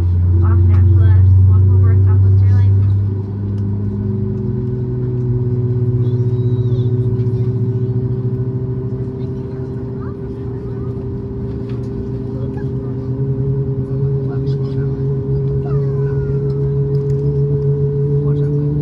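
Cabin drone of a Boeing 737 MAX 8's CFM LEAP-1B turbofan engines running at idle, heard from inside the cabin, with steady tones that slowly rise in pitch. A loud low hum drops away about three seconds in.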